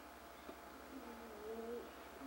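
A person's voice: a faint, soft closed-mouth hum held for about a second near the middle, over a steady low buzz in the recording.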